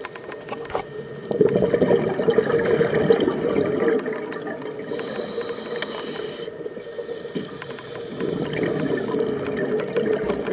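Scuba diver breathing through a regulator underwater: a gush of exhaled bubbles, a short hiss of inhalation about five seconds in, then another bubble exhalation near the end.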